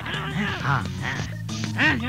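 Film background score with a steady low drone, and short squawking sounds that rise and fall in pitch over it about every half second.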